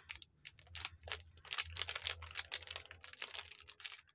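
Crinkly plastic snack wrapper being handled and squeezed in small hands, a fast irregular crackling that goes on throughout.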